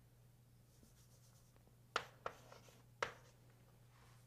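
Chalk writing on a blackboard: after a quiet start, three short sharp chalk taps come about halfway through and near the end, over a faint steady low hum.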